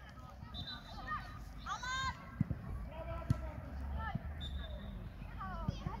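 A football being kicked in play, three sharp thuds about two and a half, three and a half and nearly six seconds in, with scattered shouts of players and onlookers around them.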